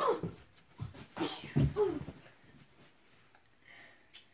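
Children's short wordless shouts and grunts of effort during a play-fight, with a few thumps of feet and bodies on the floor, all in the first two seconds.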